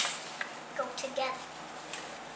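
A sharp knock at the very start, then a few brief, wordless vocal sounds from a small child about a second in.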